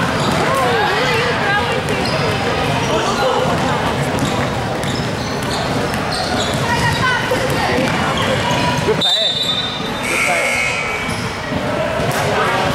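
Youth basketball game in a gymnasium: players' and spectators' voices calling out over basketballs bouncing on the hardwood floor, all echoing in the large hall. The sound breaks off sharply for a moment about nine seconds in.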